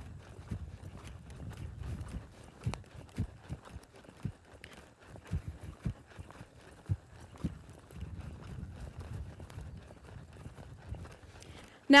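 A horse loping on sand arena footing: muffled hoofbeats, coming unevenly.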